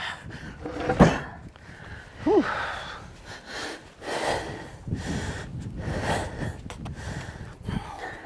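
A man breathing hard, gasping and grunting with the strain of heaving a heavy log up onto a pickup's tailgate. A single sharp knock sounds about a second in.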